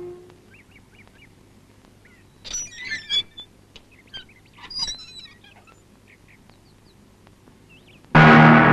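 Quiet outdoor ambience with scattered small bird chirps, broken by two louder bursts of squawking, quacking calls, about two and a half seconds in and again about five seconds in.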